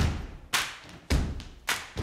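Opening of intro music: four drum hits about two a second, each a deep thud with a bright, ringing tail, before the melody comes in.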